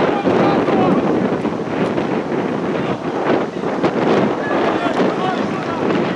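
Wind buffeting the camera microphone in a steady rumbling rush, with voices on the football pitch calling out now and then over it.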